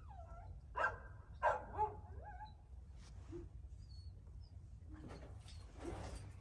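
A dog yelping and whining, with a falling cry at the start and two sharp, loud cries within the first two seconds, then quieter. The cries are from pain: the collar is deeply embedded in her neck wound.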